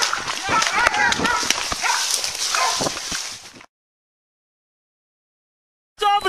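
Brush crashing and a body-worn camera jolting as its wearer runs through dense undergrowth, with a police dog barking in bursts. The sound cuts off abruptly a little over halfway through, leaving dead silence.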